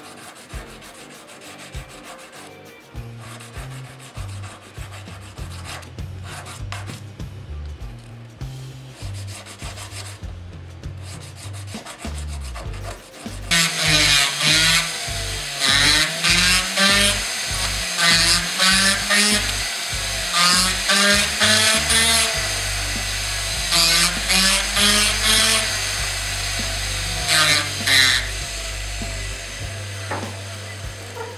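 A hand file rasping on a cast silver ring through the first half. From about halfway, a rotary tool grinds the ring in repeated bursts, its whine rising and falling. Background music with a low bass line runs under both.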